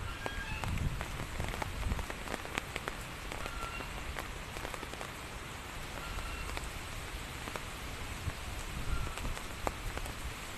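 Rain falling steadily, an even patter with many separate drops tapping close by.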